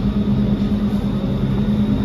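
Steady mechanical hum of a supermarket's refrigerated produce cases and ventilation, with a constant low drone and a faint high whine over it.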